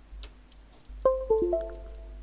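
A short electronic chime: four ringing notes struck in quick succession, mostly falling in pitch, starting about halfway in, after a single faint click.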